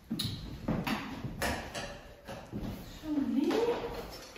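Irregular light knocks and clicks from handling tools and lengths of timber on sawhorses, about half a dozen over the first three seconds, then a short rising voice-like sound near the end.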